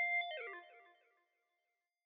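The closing held synthesizer chord of a hip-hop track rings on its own, then slides down in pitch and dies away about half a second in.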